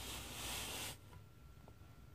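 Faint handling noise of a desk lamp being moved: a soft rustle for about a second, then a couple of faint clicks.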